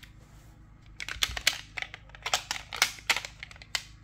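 Hard plastic graded-coin slabs clicking and clacking against each other as they are handled and fanned out in the hands: a quick, irregular run of sharp clicks starting about a second in.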